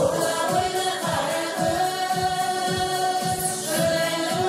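A group of older women singing a Kazakh song together over instrumental accompaniment with a steady beat.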